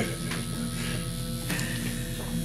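Tattoo machine buzzing steadily as the needle runs, an even electric hum with a slight change in tone about one and a half seconds in.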